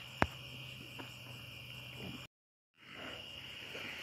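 Quiet background between words: a faint steady high-pitched tone over a low hum and hiss. A single sharp click comes about a quarter second in, and the sound drops out to dead silence for about half a second just past the middle.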